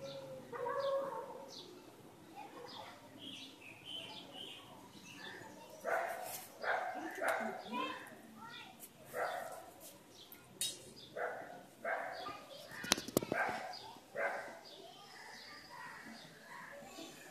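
Indistinct voices in the background, with a few sharp clicks about thirteen seconds in.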